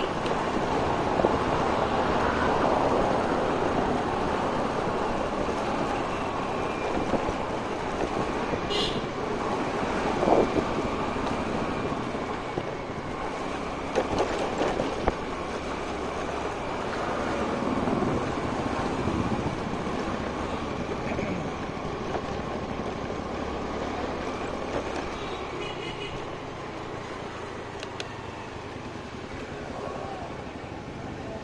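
Motor scooter running on the move, its engine hum mixed with road and wind noise, with a few short knocks from bumps along the way.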